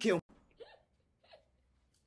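A spoken Portuguese line ends just after the start. Then two short, faint voice sounds follow about two-thirds of a second apart, like brief chuckles.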